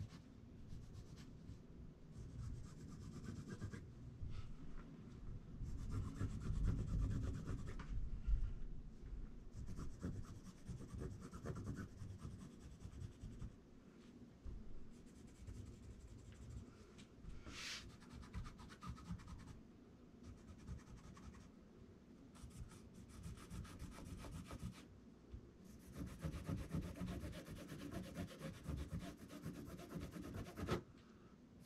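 Faint, on-and-off scratching and rubbing of a pen being drawn along the edge of a pattern piece, with hands sliding over the paper and card. One brief, sharper scrape comes a little past the middle.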